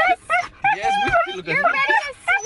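Siberian husky 'talking': a string of high, wavering, voice-like howls and whines in about four short phrases, the pitch sliding up and down, with brief gaps between.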